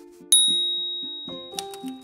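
A single bright, bell-like ding strikes about a third of a second in and rings out over about a second, a chime sound effect for the logo. Under it runs light background music with plucked notes, and a quick run of sharp clicks starts near the end.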